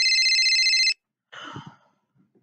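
Electronic telephone ringtone: a rapidly warbling two-tone trill that cuts off about a second in, followed by a short gasp.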